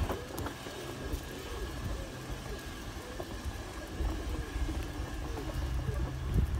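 A vehicle engine running with a low steady hum that fades and returns, over a low rumble.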